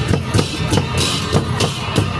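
Newar dhime drums and large brass cymbals playing a processional beat, with a low drum stroke and a cymbal clash about three times a second.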